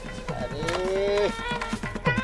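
Background music with a steady drum pattern. About half a second in, a single drawn-out call rises in pitch, holds for under a second, then breaks off.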